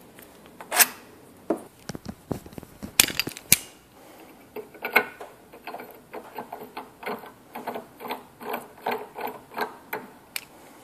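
Metal knocks and clicks as a large thread tap is handled and seated in an aluminium pipe clamped in a bench vise. A few sharp knocks come in the first half, then a run of light, even clicks at about three a second.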